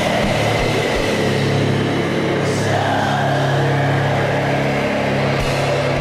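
Atmospheric black metal: heavily distorted guitars holding long, sustained low chords over drums in a dense, steady wall of sound.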